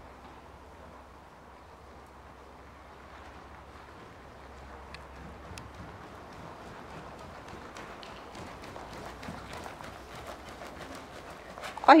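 A horse trotting on a soft arena floor: faint, muffled hoofbeats that grow clearer in the second half as the horse comes nearer.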